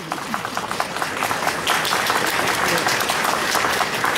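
Crowd applauding: many hands clapping at once, growing fuller about a second and a half in.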